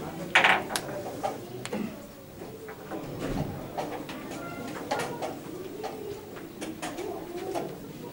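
Scattered sharp clicks and taps of wooden chess pieces being set down and chess clocks being pressed in blitz games, over a low murmur. The loudest is a brief clatter about half a second in.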